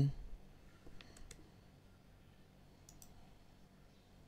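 Faint clicks of a computer mouse: a quick group of three about a second in, then a pair near the end of the third second.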